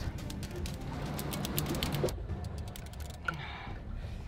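Shimano Tiagra 130 big-game reel giving line under drag as a hooked shark runs: rapid, irregular clicking that stops suddenly about halfway through. A steady low rumble lies beneath it.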